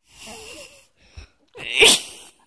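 Breathy, wheezy sounds close to the microphone: a short breathy giggle, then a sharp puff of air blown at the puppy near the end, which is the loudest sound.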